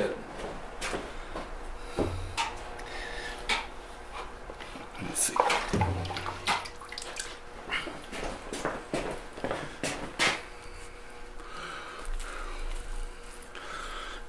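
Workshop handling sounds as wet clay and buckets are moved about: scattered knocks and clicks, a couple of dull thuds about two and six seconds in, and some wet, splashy noise.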